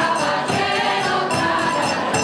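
Spanish traditional folk group singing in chorus, women's voices leading, over strummed guitars, with a percussion beat running through.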